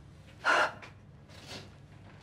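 A person's sharp, noisy gasp about half a second in, the catching breath of someone upset and close to sobbing, followed by a much fainter breath about a second later.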